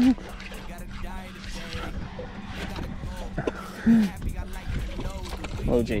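Mostly voices on a boat: faint talk, then one short, loud excited shout about four seconds in as a fish is hooked, over a steady low hum.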